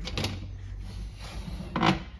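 Metal-framed folding chairs knocking and rattling against each other as one is pulled out of a stack, with a louder clatter near the end.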